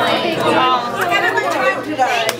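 Speech: a woman talking, with chatter from the room.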